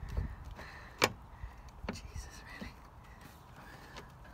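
A few light clicks and knocks from a car's wiper motor and its metal bracket being worked into place against the bulkhead, with one sharp click about a second in.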